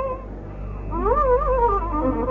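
Carnatic bamboo flute playing in raga Shuddha Saveri. An ornamented phrase with wavering pitch trails off at the start, there is a short lull, and then a new phrase glides upward about a second in.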